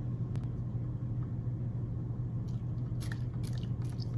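A small plastic soap-dispenser-style hand pump being pressed, giving several quick clicks and wet squelches in the second half as it draws water up through saturated sand. A steady low hum runs underneath.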